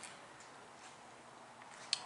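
A quiet pause: faint room hiss with a couple of soft clicks, one at the start and one just before the end.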